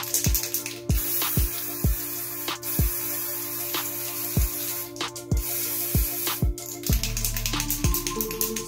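Aerosol can of temporary hair colour spray hissing in several long bursts with short breaks between them, over background music with deep bass kicks that drop in pitch. The music changes near the end.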